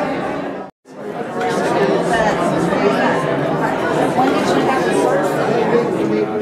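Indistinct chatter of many people talking at once in a large room, broken by a sudden cut to silence for a moment under a second in.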